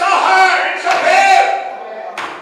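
A man's voice shouting loudly through a microphone and PA in a sing-song preaching cadence, two long drawn-out phrases.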